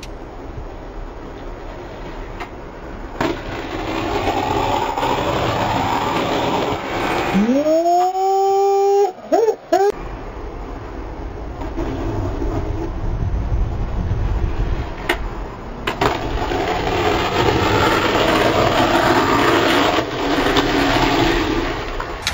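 Skateboard wheels rolling on rough concrete, a rumbling noise that builds and fades twice, with a few sharp clacks of the board. About eight seconds in, a short tone rises in pitch and then holds briefly.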